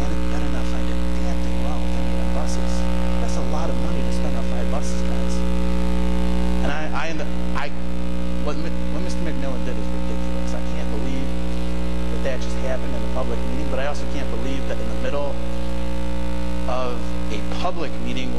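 Loud, steady electrical mains hum on a meeting-room microphone and sound system: a low buzz with a stack of steady overtones. Faint distant voices murmur under it now and then.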